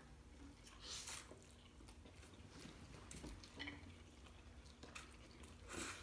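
Faint chewing of mouthfuls of noodles, a few soft wet mouth noises over near silence.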